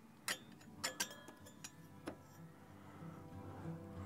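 About half a dozen light metal clicks in the first two seconds as a sheet-steel guard is handled against an alternator's fan and casing, over quiet background guitar music.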